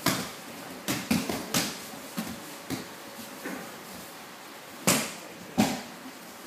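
Scattered thuds and slaps of aikido practitioners' bodies and hands hitting the mats as they take falls. There are about eight impacts of varying loudness at irregular intervals, with the loudest two near the end.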